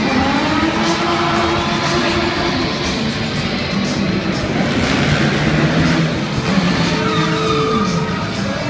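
Loud show music mixed with a stunt car's engine revving as it is driven around the arena.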